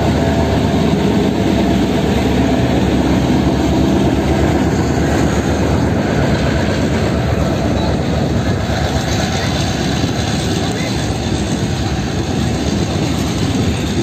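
Two EMD GP38-2 diesel locomotives, each with a 16-cylinder two-stroke EMD 645 engine, running loud as they pass close by, followed by covered hopper cars rolling past with steel wheels on the rails. The engine hum fades about halfway through, leaving a steady rolling rumble.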